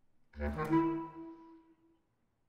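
Bass clarinet: a sudden loud attack about a third of a second in, several pitches sounding at once, narrowing to a single held high note that fades out just before the end.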